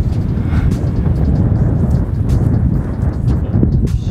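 Wind buffeting an outdoor microphone: a loud, steady low rumble with no pitch to it.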